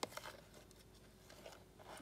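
A sharp click, then a few faint light ticks: a metal spoon knocking against a plastic container while scooping papaya seeds.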